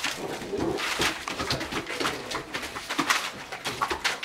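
Great Dane puppies making low, short play vocalizations, with the rustle and scratch of paws on newspaper.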